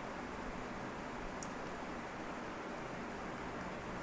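Steady faint hiss of background noise from the recording, room tone with no distinct event.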